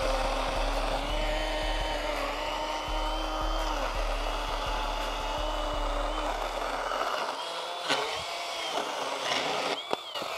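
Kobalt 24V brushless 6-inch battery pruning chainsaw cutting through a 6x6 wooden post, its motor whine holding steady under load without bogging down. The sound thins out about seven seconds in, and there is a sharp knock about a second later.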